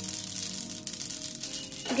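Sesame and mustard seeds crackling and sizzling in hot oil in a nonstick pan as a tempering (tadka), a fine, continuous spitting. Faint steady background music tones run underneath.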